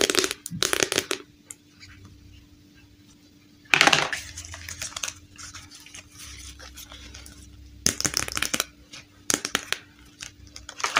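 Hard plastic dollhouse kit parts and printed card panels handled on a table: several short bursts of clattering and rustling, the loudest about four seconds in and another pair near the end.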